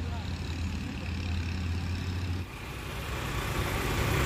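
Heavy vehicle engine idling, a steady low drone; the sound changes abruptly about two and a half seconds in, then carries on.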